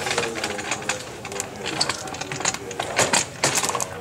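Handling noise from the camera being held and fumbled with: a rapid, irregular string of small clicks and knocks.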